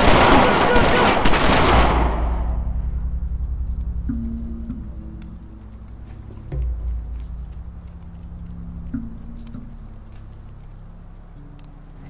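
A loud burst of rapid gunfire, many shots in quick succession, lasting about two seconds and dying away. Low, dark film music with sustained bass notes follows.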